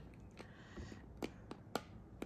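Pop Babies portable blender giving a series of faint, sharp clicks, several a second, instead of running: it is struggling to blend and needs to be plugged in to charge.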